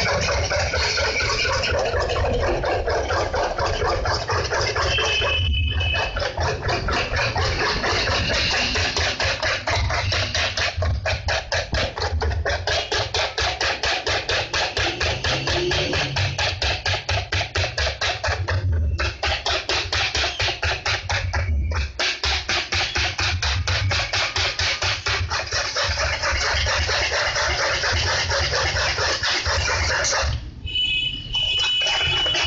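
Chocolate cake batter beaten hard by hand in a steel bowl: the utensil scrapes and clatters against the metal in a fast, steady rhythm of several strokes a second, with a few brief pauses.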